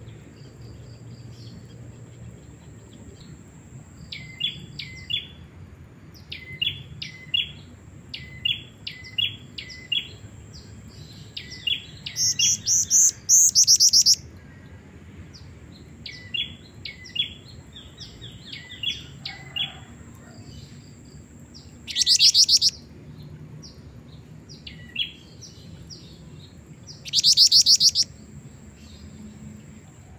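Female black-winged flycatcher-shrike (jingjing batu) calling: a run of short high chirps, often in pairs, broken by three loud rapid trills, about twelve seconds in, about twenty-two seconds in, and near the end.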